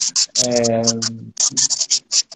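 Scratchy, crackling bursts from a breaking-up video-call audio line, several each second, with a man's voice holding a drawn-out 'ehh' for about a second near the start. The audio connection is dropping out.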